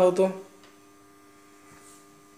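A man's voice finishes a phrase, then a faint steady electrical hum of several fixed tones carries on in the pause.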